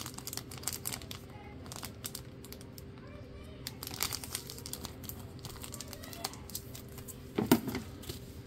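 Clear plastic bag crinkling and rustling as a trading card in a hard plastic holder is handled and slid into it: a run of small irregular crackles and clicks, with a louder flurry of handling near the end.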